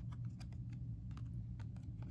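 Trading cards being shuffled in the hands: a quick, irregular run of light clicks and ticks as the card edges slide and snap past one another.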